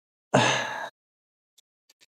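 A person's short breathy exhale, about half a second long.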